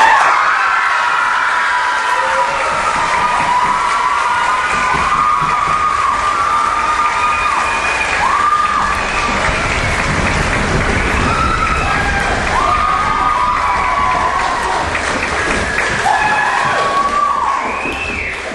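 An audience applauding and cheering, with whoops and shouts over steady clapping; it starts suddenly as the music stops and tails off near the end.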